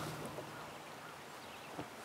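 Faint outdoor background with no clear source, and a single soft click near the end.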